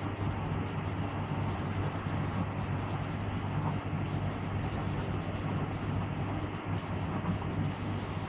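Steady room tone: a low, even hum under a soft hiss, with no distinct events.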